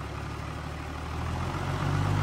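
Isuzu 6WF1 truck diesel engine idling smoothly on a test stand, its low note growing a little louder in the second half.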